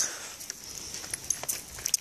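Footsteps on a dirt hiking trail, a low scuffing with a few faint clicks.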